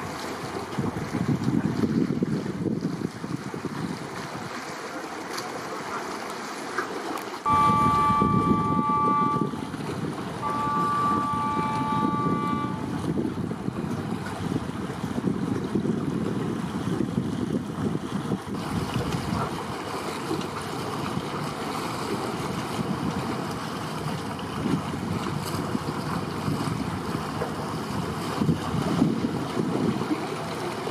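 Wind buffeting the microphone over the wash of harbour water. About 8 s in, a high two-note horn sounds two long blasts of about two seconds each, a second apart.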